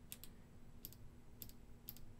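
Near silence with a few faint, short clicks spaced about half a second apart.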